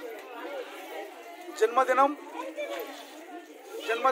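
Indistinct chatter of people talking, with one voice louder for about half a second halfway through.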